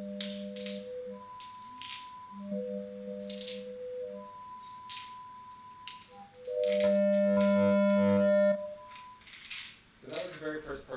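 Electronic synthesizer tones played on the Tingle, a pin-array haptic music controller, as hands press its pins: held notes that start and stop, with soft swishes between them. About seven seconds in, a louder, fuller chord sounds for under two seconds and cuts off sharply.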